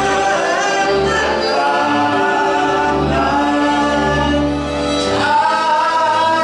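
A woman and a man singing a Hungarian song together, with violin accompaniment and long held notes.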